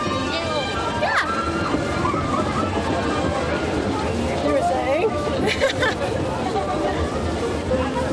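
Music playing over a babble of voices from people on and around a spinning amusement ride.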